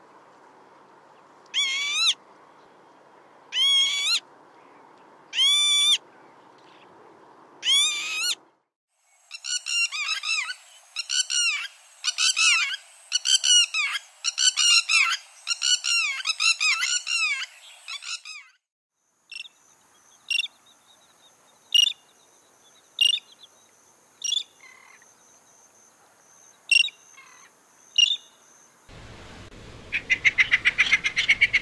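Northern lapwing calling its wheezy 'peewit' four times, about two seconds apart. A red-wattled lapwing follows with a fast run of repeated calls lasting about ten seconds, then come short, sharp single calls about a second apart.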